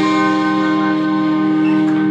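A live band's held final chord ringing steadily on electric guitars, with no new notes struck, as a song comes to its end.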